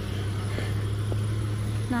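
Steady low hum of street traffic, with a voice starting up near the end.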